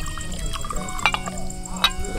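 Wine poured from a straw-covered glass flask into a drinking glass, with a few short glugs about a second in and near the end. Background music of held notes runs under it.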